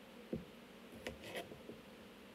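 Kitchen knife cutting through red potatoes onto a plastic cutting board: a soft thump about a third of a second in, then two short crisp slicing clicks a little past the middle.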